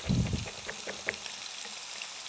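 Lamb cutlets and diced bacon frying in pans, a steady sizzle, with a knife tapping a few times on a plastic chopping board as garlic is chopped. A dull thump comes right at the start.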